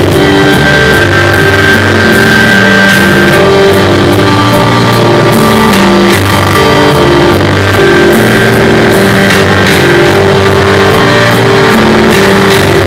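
Live band playing loud instrumental music, with a violin among the instruments: sustained notes over a bass line that changes note every second or so, and a long held high note early on.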